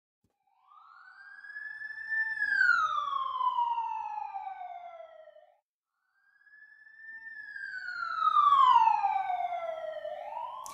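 Siren wailing: two long, slow wails, each rising briefly and then falling over about three seconds, with a short break between them.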